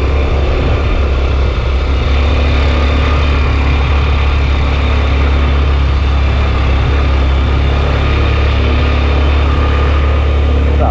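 Steady, loud rumble of a moving vehicle, engine and road noise heavy in the low end, heard from on board.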